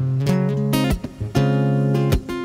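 Acoustic guitar played fingerstyle, plucked chords and single notes ringing on, with fresh notes struck twice partway through.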